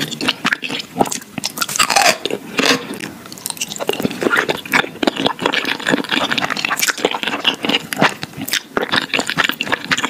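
Close-miked eating sounds: crisp crunching on pickled yellow radish slices, then slurping and wet chewing of thick jjajangmyeon noodles in black bean sauce, with many sharp mouth clicks.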